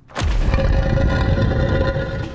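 Scene-change sound effect: a sudden deep boom under a held musical chord that carries through and begins to fade near the end.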